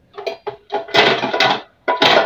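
Metal kitchenware being handled: a run of short scrapes and clatters as a steel cooking pot is shifted on the stove and utensils are picked up, with a brief metallic ring near the end.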